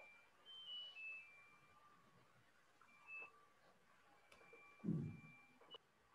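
Faint short electronic beeps, several in small groups, some stepping down in pitch, with a brief low thump about five seconds in.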